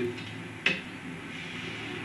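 A single sharp knock on the dodgem track's steel floor plates about two-thirds of a second in, over a steady low background hum.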